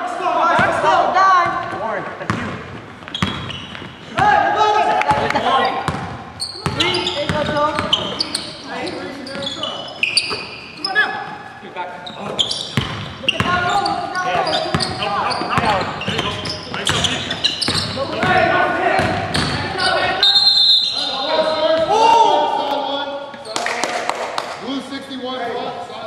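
A basketball bouncing on a hardwood gym floor during play, with players' voices calling out throughout and ringing off the walls of the large hall.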